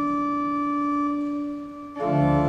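Pipe organ holding a sustained chord at the close of a hymn introduction; the chord dies away shortly before the end.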